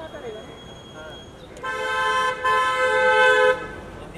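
Car horn honking twice, about a second and a half in: a short blast, then a longer one lasting about a second.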